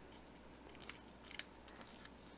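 Origami paper being folded and creased by hand: a few faint, crisp paper crinkles, about a second in and again near the end, over low room hiss.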